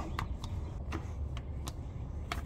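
Small hand fluid pump threaded onto a gear-oil bottle being worked stroke by stroke, a sharp click about every half second as it pushes gear oil into the rear differential, over a low steady hum.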